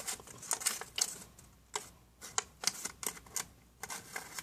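Paper being handled: irregular crisp rustles and small sharp clicks as a cut paper piece is fitted into a small paper envelope.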